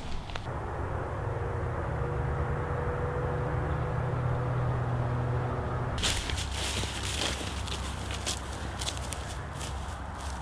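A steady low hum with a faint held tone for the first six seconds. Then, from about six seconds in, footsteps crunching through dry, matted grass and dead stalks, a run of irregular crackles.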